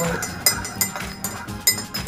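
A spoon clinking irregularly against the inside of a mug as a drink is stirred to dissolve salt in it. There are several sharp clinks, the loudest about half a second in and again near the end.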